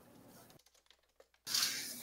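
Computer keyboard typing: a few faint, quick keystrokes. Near the end comes a loud breathy hiss as a man draws breath to speak.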